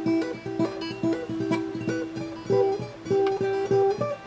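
Acoustic guitar fingerpicked in a quick repeating figure: single plucked notes on the upper strings, several rising into a hammered-on note, cycling a few times a second.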